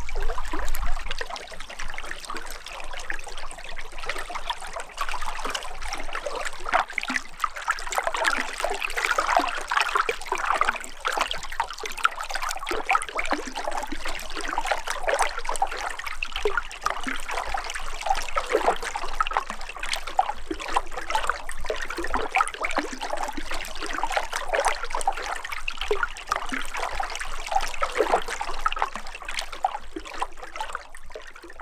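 Shallow stream running and trickling over stones, a steady babble of open water.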